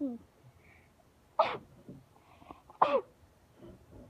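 A person sneezing twice, about a second and a half apart, each sneeze sudden and loud.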